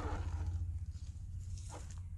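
Steady low rumble with a faint electric-motor whine that fades out in the first half second, and a brief crackle about 1.7 seconds in, from a 1/12 scale MN99 Defender RC off-road car driving over dry grass, twigs and dirt.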